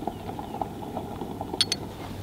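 Steady low outdoor background noise with a faint hum, and two short light clicks about a second and a half in.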